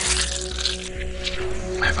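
Sustained background music, with a hissing, rushing noise laid over it that is strongest in the first second.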